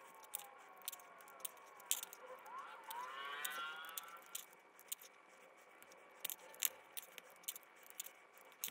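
Faint, quick clicks and small snaps of cardboard game chits being pressed into 3D-printed plastic holders, several to the second. A faint wavering, gliding tone rises and falls through the middle.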